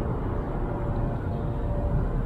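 Steady low background rumble with no distinct events, and a faint thin hum in the second half.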